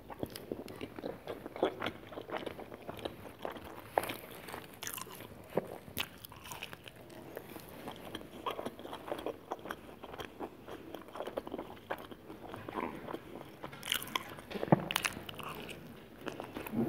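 Close-miked eating of a cheese pizza topped with fries: bites into the slice and continuous chewing, full of short crunchy clicks and crackles, with the loudest crunch near the end.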